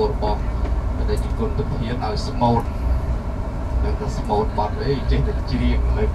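Steady low road-and-engine rumble inside the cabin of a moving vehicle, with people chatting in the background.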